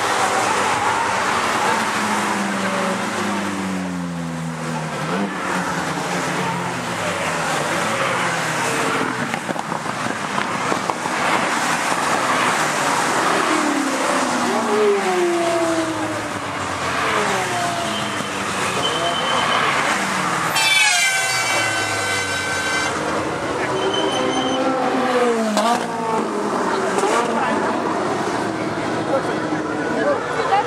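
A procession of Ferrari and other supercar engines passing one after another on a race track, each engine's pitch rising and then falling as the car goes by. About 21 seconds in, a car horn sounds for about two seconds.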